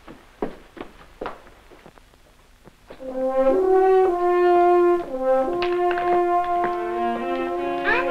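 Orchestral film score comes in about three seconds in with loud held chords that change pitch in steps every second or so. Before it there are only a few faint taps.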